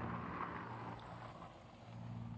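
Faint outdoor background: a steady low hum with a light hiss, fading a little toward the end.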